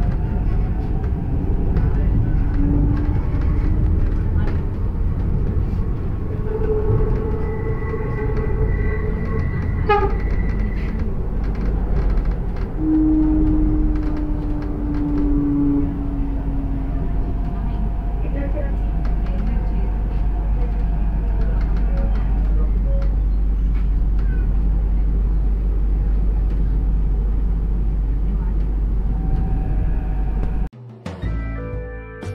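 Elevated metro train running, heard from inside the passenger car: a steady low rumble of the wheels on the rails, with a few brief held whining tones in the first half.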